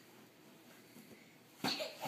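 Mostly quiet, then about one and a half seconds in a person gives one short, sharp, cough-like exhaled burst.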